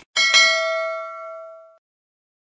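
Bell-chime sound effect for clicking a notification bell: a bright ding struck twice in quick succession near the start, ringing on and fading out over about a second and a half.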